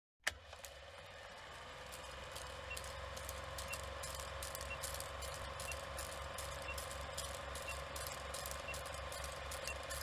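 Old film projector sound effect: a steady running hum with a fast low flutter, crackle and scattered pops like dusty film, and a faint short beep about once a second.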